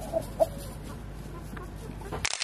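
Young chicken giving two short, soft clucks in the first half second.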